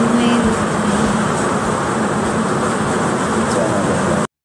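Close of a phone-recorded karaoke duet: a held note trails off about half a second in. A loud, steady hiss remains, with faint traces of voice or backing music.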